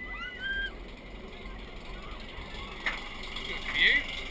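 Roller coaster train on a B&M wing coaster cresting its lift hill: a steady low rumble of the ride with wind noise on the microphone, a rider's short rising whoop right at the start, a single click about three seconds in, and a loud shout just before the end.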